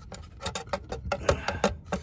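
A quick, irregular run of sharp knocks and clicks as an engine cooling fan and its metal hub hardware are handled and worked loose from the fan clutch.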